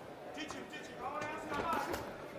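Faint shouted voices around a boxing ring over low arena background noise, with no clear punch or other distinct impact standing out.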